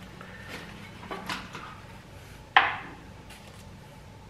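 Kitchen utensils handled on a counter: a few light clicks and knocks, then one sharp clack a little past halfway, over a faint low hum.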